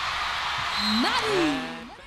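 Arena crowd cheering during a volleyball rally, swelling about a second in, with one shout that rises and falls in pitch before the noise drops away near the end.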